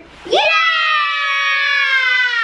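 Children shouting a long, high-pitched 'Yeah!' in excitement, starting about half a second in and held without a break.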